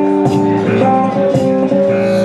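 Blues guitar playing an instrumental passage, held notes and chords changing about twice a second.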